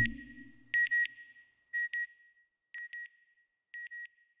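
Electronic beeps in quick pairs, one pair about every second, each pair fainter than the one before, as a logo sound effect. A low whoosh fades out during the first second.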